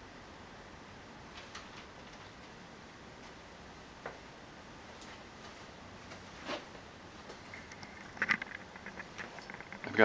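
Quiet garage room tone with a few faint, scattered clicks and knocks, then a quicker run of small clicks near the end.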